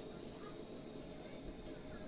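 Quiet room tone: a faint, steady hiss with no distinct sound event.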